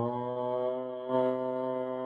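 A man's voice holding one long, low chanted tone at a steady pitch, growing a little louder about a second in.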